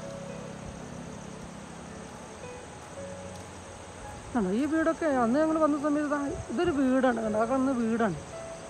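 A voice singing a long, wavering melody comes in about four seconds in, over faint background music; before that there is only a faint steady hum.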